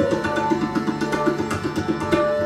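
Sikh kirtan music: tabla playing a fast run of strokes under sustained melodic lines from harmonium and string instruments.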